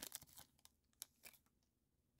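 Faint crinkling of a foil trading-card pack wrapper as a card is slid out, a few soft crackles in the first second and a half, then near silence.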